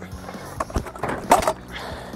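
Stunt scooter on asphalt: wheels scraping and rolling, with two sharp clacks about half a second apart, as the deck is whipped around the bars in a tailwhip attempt.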